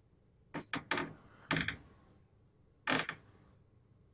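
Bed covers rustling in about five short bursts as someone shifts under a duvet.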